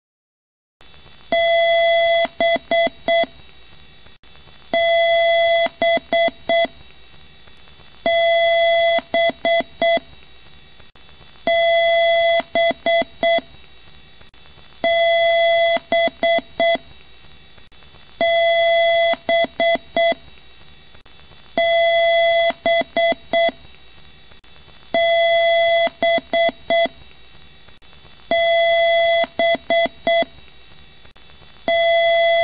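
PC speaker beep code during a BIOS power-on self-test: one long beep followed by four short beeps, the pattern repeating about every three and a half seconds over a steady hiss.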